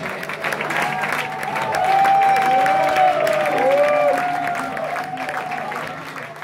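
Concert audience applauding and cheering after the final song, with a sustained pitched tone gliding up and down over the clapping, loudest in the middle and fading toward the end.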